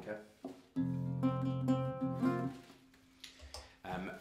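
Nylon-string guitar: a chord strummed once, starting suddenly under a second in and ringing for almost two seconds before the lower strings are damped. One note keeps sounding faintly until near the end.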